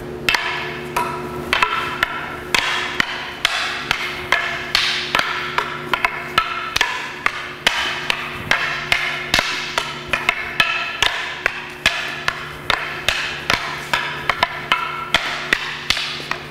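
Rattan fighting sticks clacking against a wooden staff in a fast block-and-check drill: a rapid run of sharp wooden knocks, about three to four a second, each with a short ringing tone. A steady low hum runs underneath.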